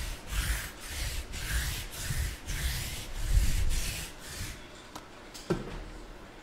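A lint roller rubbed back and forth over the table surface in about eight quick strokes, roughly two a second. The rubbing stops about four and a half seconds in, and a short sharp sound follows a second later.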